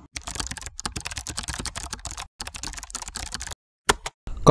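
Computer keyboard typing: a fast, dense run of keystroke clicks with two short breaks, stopping shortly before the end, followed by a single last click.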